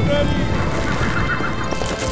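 A horse whinnying about a second in, over the steady rumble of galloping hooves and a rolling wooden stagecoach.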